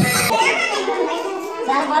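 Children's voices and chatter in a room, several talking at once; a song with a heavy bass cuts off abruptly a fraction of a second in.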